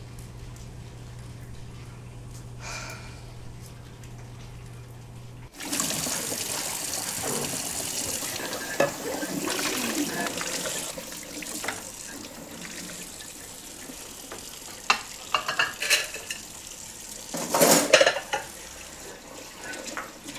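Kitchen tap running into a sink while plates are washed by hand, with dishes clinking now and then and a louder clatter near the end. Before the water starts, about five seconds in, there is only a low steady hum.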